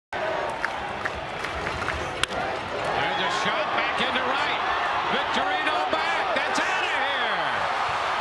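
Ballpark crowd noise with a single sharp crack of a wooden bat on a baseball about two seconds in. The crowd then cheers and shouts, louder from about a second later, as the ball carries for a home run.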